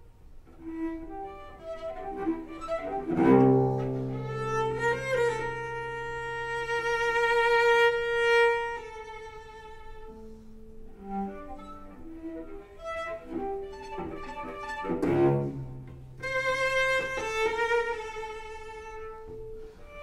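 Solo cello played with the bow: long sustained notes, some with vibrato, broken by two forceful strokes that sound low strings together, about three seconds in and again about fifteen seconds in.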